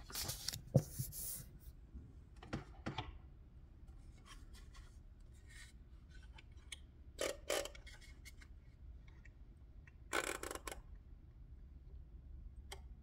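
Handling noise from a wooden pyramid-shaped mechanical metronome being lifted and set to tempo 66: scattered short rubs and scrapes, the longest burst near the end, with no ticking yet.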